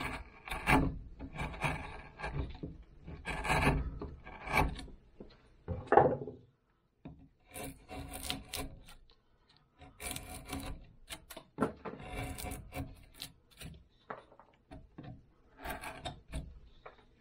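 Hand carving gouge and knife cutting and scraping soft cottonwood bark in short, irregular strokes, with a few brief pauses. There is one louder knock about six seconds in.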